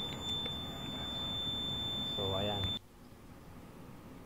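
Fluke 374 clamp meter's continuity beeper sounding one steady high-pitched tone while its probes bridge the black and green leads of an electric motor's winding, the sign of a closed circuit through the winding at about 22.5 ohms. The tone cuts off suddenly about three quarters of the way through.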